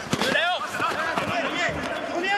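Spanish-language football commentary: a commentator's voice talking over the match broadcast sound.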